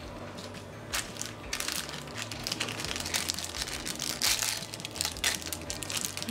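Crinkling of small plastic wrapper packets being handled: a dense run of crackles that starts about a second in and grows louder toward the end.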